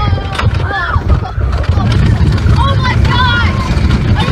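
A small steel roller coaster's train rolling along its track with a steady low rumble, and riders letting out short high-pitched yells twice.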